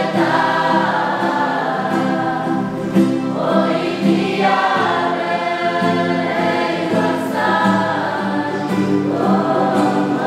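A group of young people singing a hymn together, accompanied by two strummed acoustic guitars, the voices moving in phrases of a few seconds over steady guitar chords.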